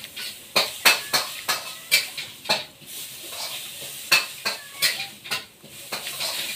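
A person eating eggplant dip, boiled eggs and fresh greens by hand: irregular sharp clicks and smacks, a few each second, from chewing and from fingers picking food off the plate.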